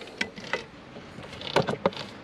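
A few light clicks and knocks from a hand handling a roof-rack fitting, with a closer cluster of knocks near the end.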